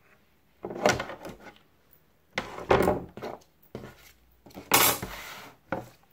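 Hot glue gun and craft materials being picked up and handled on a tabletop: three short bursts of knocks and rustling with quiet between.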